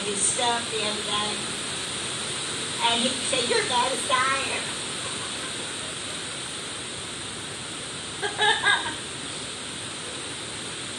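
Heavy rain on a metal building's roof, a steady hiss, with short snatches of voices over it near the start, about three to four seconds in, and near the end.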